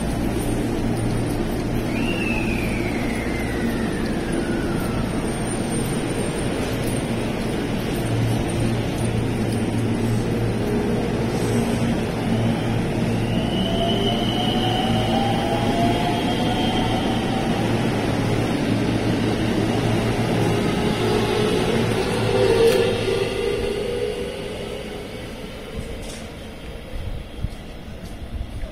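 JR West 223 series electric train pulling out and accelerating: the inverter-driven traction motors whine in tones that climb in pitch over a steady rumble of wheels on rail. A single tone falls in pitch about two seconds in, and the sound fades near the end as the train clears the platform.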